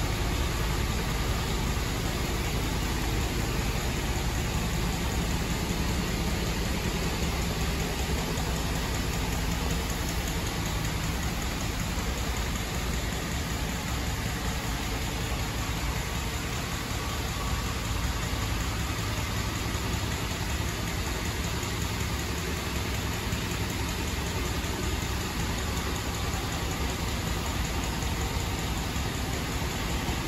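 Heavy-truck diesel engine idling steadily, a low even rumble with no change in speed.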